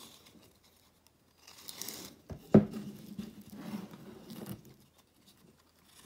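Blue braided rope being pulled through the hole of a hard plastic net buoy on a wooden table: rustling and rubbing, with a sharp knock about two and a half seconds in.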